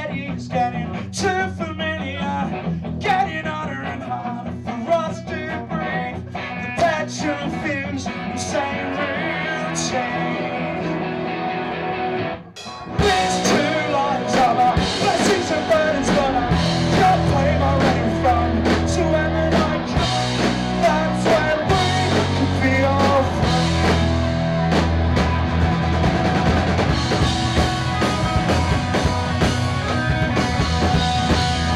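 Live rock band playing: a singer over electric guitar in a lighter opening section, then after a brief break about twelve seconds in the full band comes in louder, with drum kit and bass guitar.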